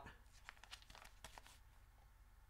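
Faint crinkling of a plastic pouch of Beech-Nut chewing tobacco as it is handled and turned over, a few soft scattered crackles over the first second and a half.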